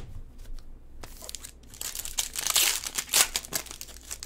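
Foil trading-card pack wrapper crinkling and tearing as it is opened by hand, busiest from about two to three and a half seconds in, after a single sharp click at the start.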